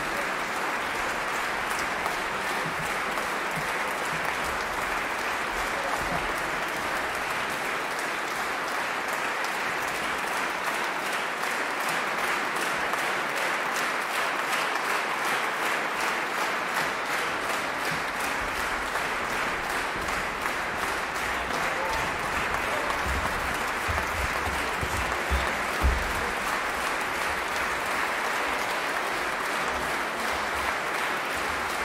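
A large audience applauding steadily and without a break, with a brief low bump near the end.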